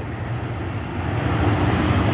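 Low, steady rumble of a vehicle engine, slowly growing louder.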